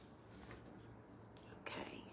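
Near-quiet room with a faint steady low hum. Near the end comes a short, breathy, unvoiced sound from the woman, like a breath or whisper before she speaks.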